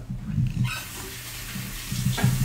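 Water running: a steady hiss that starts suddenly about two-thirds of a second in.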